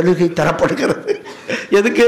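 A man speaking into a microphone over a PA system, in continuous speech.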